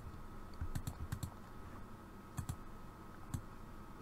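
Quiet, scattered clicks of a computer mouse, several coming in quick pairs.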